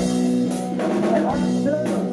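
Live rock band playing between vocal lines: electric guitars hold sustained chords over a drum kit, with drum hits about half a second in and again near the end.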